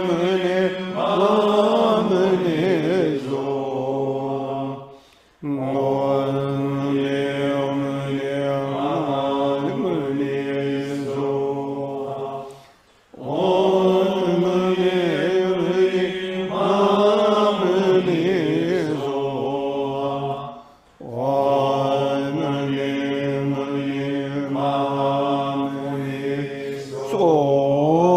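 A man's voice chanting a Buddhist mantra in long, sustained phrases on a mostly steady pitch, with short pauses for breath about five, thirteen and twenty-one seconds in.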